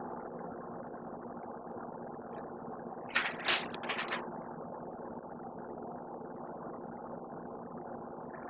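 Steady mechanical hum with a few faint steady tones in it, like a motor running. A brief burst of noise comes a little after three seconds in.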